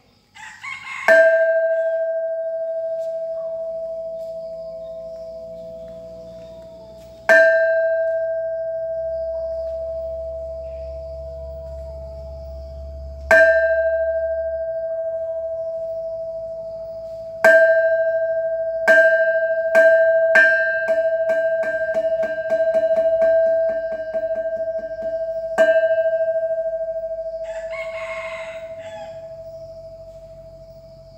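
A hanging metal Thai temple bell being struck. There are three slow strokes about six seconds apart, then three quicker ones and a fast roll of light strokes, then a final stroke left to ring out. Each stroke rings one steady tone that dies away slowly.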